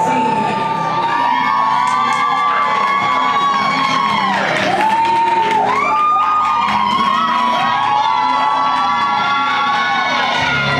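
Music playing loudly while a crowd cheers and whoops over it, with held notes that slide down in pitch about halfway through.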